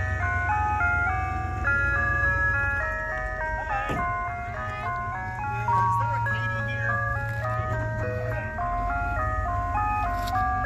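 Ice cream truck playing its chime melody through its loudspeaker as it drives up, a simple tune of single notes stepping up and down, with the truck's engine humming low underneath.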